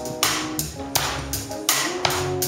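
Live band playing: a drum kit keeps a steady beat with sharp cymbal and drum hits about twice a second, over an electric bass line and held notes.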